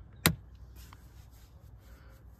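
A single sharp click about a quarter second in, over a faint steady low hum in a car's cabin.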